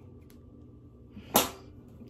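A single short, sharp snip from small scissors working on a leathery ball python eggshell, about a second and a half in, with a faint tick shortly before it.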